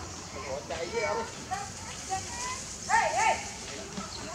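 Infant long-tailed macaque giving a run of short, high, wavering whimpering calls. A louder pair of rising-and-falling cries comes about three seconds in. These are distress calls of a hungry infant begging for food that its mother will not share.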